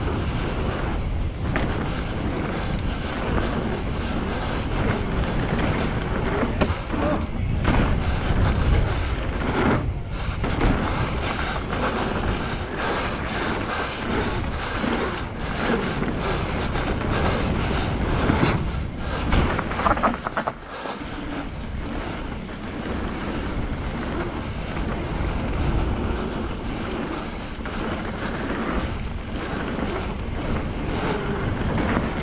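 Wind buffeting a camera microphone, with the rumble of a hardtail mountain bike rolling fast over a dirt trail and occasional sharp knocks. The noise drops briefly about twenty seconds in.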